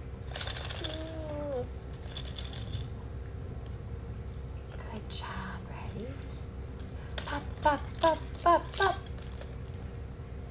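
A plastic toy rattle shaken in two short bursts in the first few seconds, with a brief falling vocal sound between them. Near the end come four quick sing-song vocal syllables mixed with more rattling clicks.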